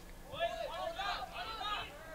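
Voices shouting at a distance across an outdoor field: several short, high calls that rise and fall in pitch and overlap one another.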